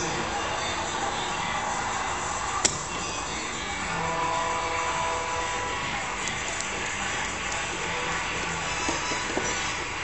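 Music playing steadily, with a single sharp click about two and a half seconds in.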